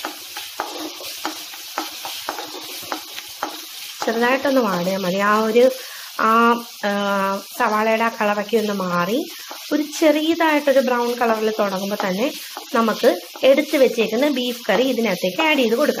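Sliced onions sizzling as they fry in oil in a steel wok, stirred with a spatula that scrapes and clicks against the pan. From about four seconds in, a person's voice sounds over the frying.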